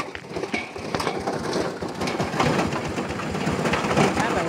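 Cassava being ground: a dense, irregular clatter of rattling and crunching.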